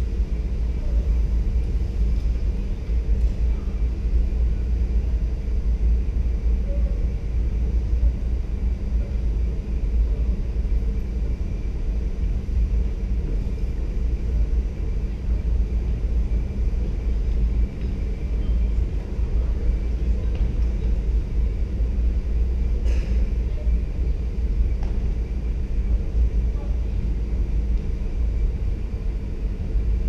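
Steady low rumble of background room noise in a large gymnasium, with no distinct events except one faint knock about three-quarters of the way through.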